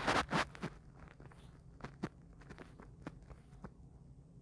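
Faint scattered clicks and soft taps, with a brief rustling burst at the start.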